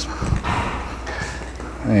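Footsteps on a concrete floor over a steady low background rumble.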